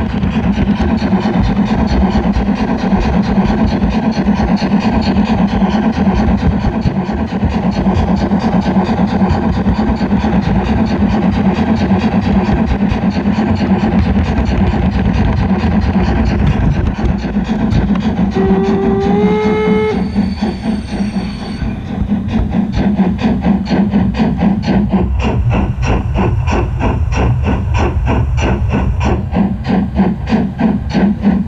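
O-gauge model steam train running, heard from on board, with a steady hum and a fast, even clicking beat. About two-thirds of the way in a short whistle sounds, stepping up slightly in pitch.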